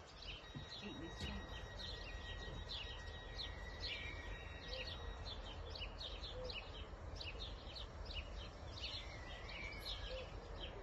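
Small birds chirping busily and continuously, over a low steady rumble, with a faint steady high tone for roughly the first six seconds.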